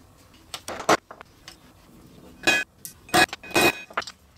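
Walnut trivet strips and a small bag of brass rivets handled and set down on a wooden workbench: a few short, sharp clinks and clacks in small clusters, the loudest in the second half.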